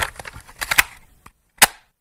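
An added outro sound effect: a quick run of sharp cracks and clicks, then one louder crack near the end, after which the sound stops.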